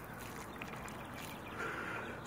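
Water poured into a planting hole to water in a freshly planted leek seedling: a faint, steady trickle into wet soil, with a soft gurgle of air bubbling up near the end.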